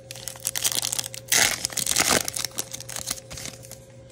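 Foil wrapper of a Topps Chrome baseball card pack crinkling and tearing as the pack is ripped open and the cards pulled out. The crackle is irregular and loudest in the middle.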